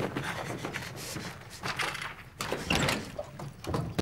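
Scattered knocks and clatter with rustling noise, no speech, at a moderate level, louder a little after the middle.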